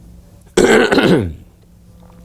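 A man clears his throat once, a loud rasp of under a second starting about half a second in, its pitch dropping as it ends.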